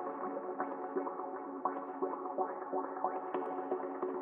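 Sliced melodic synth sample in F minor played from Ableton's Simpler through a resonant low-pass filter whose cutoff follows note velocity, with echo from a tape-style delay. Short filtered plucks, some with quick upward sweeps, sound over a steady sustained tone.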